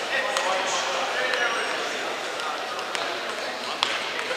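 Indistinct crowd chatter echoing in a large sports hall, with a few sharp knocks scattered through it.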